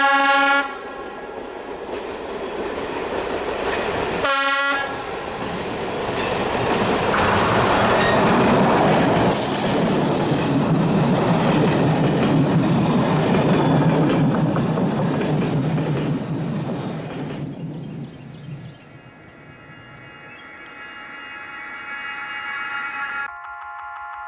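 ČD class 754 diesel locomotive sounding its horn twice, a blast ending just after the start and a short second one about four seconds in, then passing close with its engine and its coaches' wheels rolling by. The noise swells to its loudest in the middle and fades away after about eighteen seconds.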